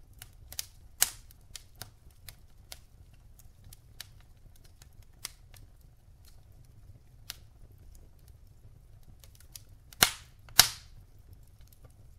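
Wood fire burning in a fireplace, crackling with irregular small pops and snaps. Two loud pops about ten seconds in, half a second apart.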